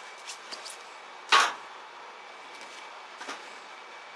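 Paperback manga volumes being handled and set on a shelf: one sharp slap of a book landing about a second and a half in, with a few light taps around it.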